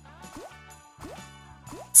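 Online slot machine game sound: background music with a string of short rising bloop effects, a few a second, as the reels spin and land on autoplay.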